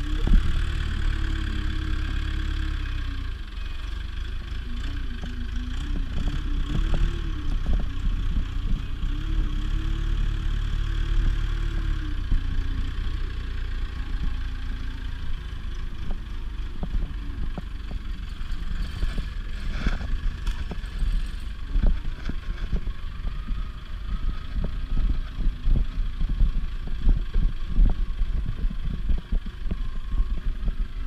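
1986 JCB telehandler's diesel engine running as the machine drives with a load of brash on its forks, its pitch rising and falling over the first dozen seconds. Scattered cracks and knocks come through, more of them in the second half.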